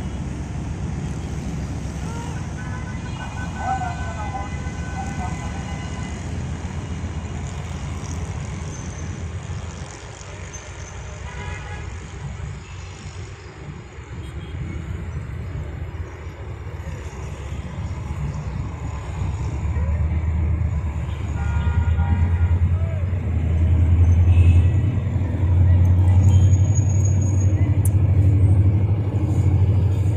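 ZCU-30 (GE U30C) diesel-electric locomotive chugging as it works up to speed after slowing for track maintenance. Its low, pulsing engine rumble grows much louder over the last ten seconds as the locomotive draws near. Road traffic hums underneath.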